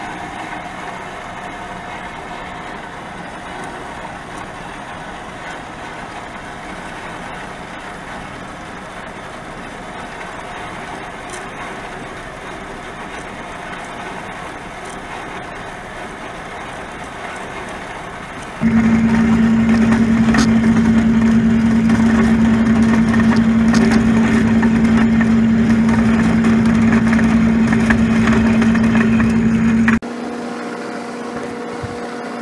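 Horizontal metal-cutting bandsaw running with its blade sawing through a thick 7075 aluminum bar, a steady machine noise. About two-thirds of the way through, the sound abruptly becomes much louder, with a strong steady hum under the sawing noise.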